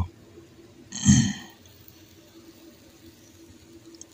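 A single short, loud burp about a second in, then a faint steady hum.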